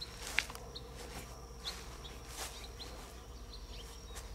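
Outdoor ambience of small birds chirping: scattered short, high chirps over a faint, steady high-pitched tone. There are a few brief, soft knocks or rustles, the clearest about half a second in.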